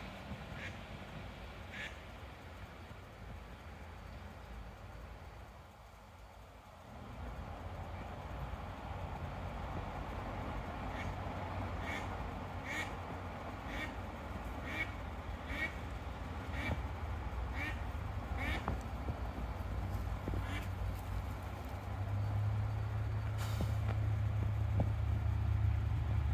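Ducks quacking: a string of short quacks, about one a second, mostly in the middle of the stretch. A low steady hum grows louder toward the end.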